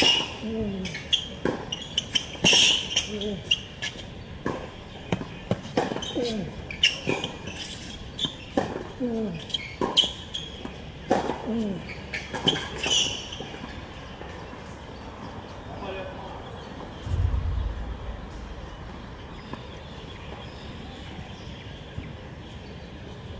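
Tennis rally on a hard court: a ball is struck back and forth with rackets and bounces on the court, with a player's short grunt on several shots. The rally stops about 13 s in, and a single low thump follows a few seconds later.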